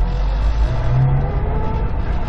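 Subaru WRX STI's EJ20 flat-four engine pulling as the car accelerates, its note rising through the middle of the clip, heard from inside the cabin over a steady low road rumble.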